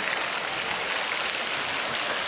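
Ornamental fountain jets splashing into their pool, a steady rush of falling water.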